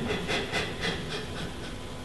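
A man sobbing in short, breathy gasps, about four a second, fading away after a second or so and leaving faint room tone.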